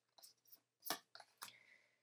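Faint handling noise of a tarot deck being picked up and its cards shuffled in the hands: a few short, light clicks and brushes, the clearest about a second in.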